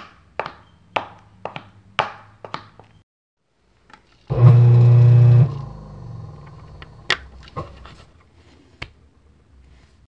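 Foley sound effects for an animation: sharp footstep clicks about twice a second over a low hum. After a short gap comes a loud, low, steady buzz lasting about a second, which dies away into a rumble, followed by a few sharp clicks near the end.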